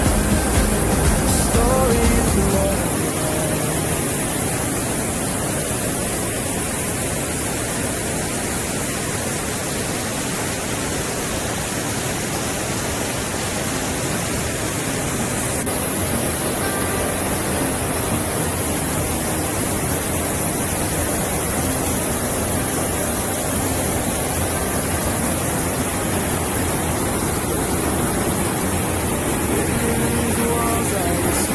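Rushing mountain stream and waterfall: a steady, even roar of water tumbling over boulders, with the tail of a pop song fading out in the first couple of seconds.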